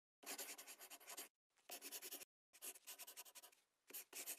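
Marker pen writing on a white surface: four spells of scratching, each under about a second, separated by short pauses as each set of letters is drawn.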